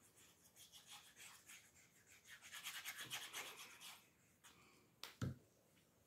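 Faint rapid rubbing and scraping of paper as a small piece of paper is glued and pressed onto a paper strip, then a single short knock about five seconds in.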